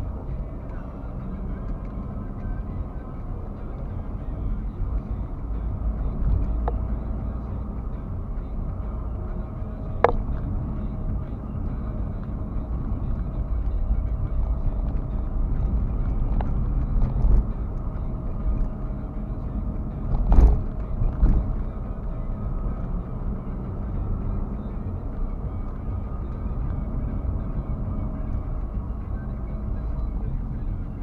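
Steady low rumble of a car's engine and tyres heard from inside the cabin while driving on city streets. A sharp click comes about ten seconds in and a louder jolt around twenty seconds in.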